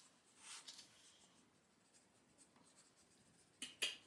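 Near silence, with a soft scratchy rustle about half a second in and two sharp clicks close together near the end.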